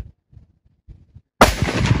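A single rifle shot about one and a half seconds in, a sharp crack followed by a ringing echo that carries on.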